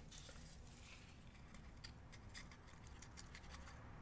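Near silence with faint scattered small clicks and rustles from jars and containers being handled and opened at a table.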